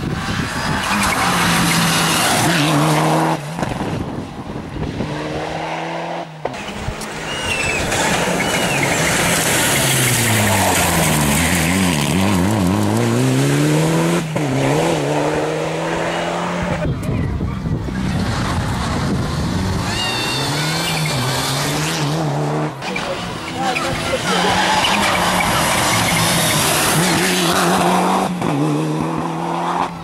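Rally cars at full throttle on a special stage, several passes cut one after another: engine pitch climbing and dropping sharply with each gear change and lift, and one car's pitch sweeping down and back up as it passes, about twelve seconds in. Short tire squeals come in a couple of places.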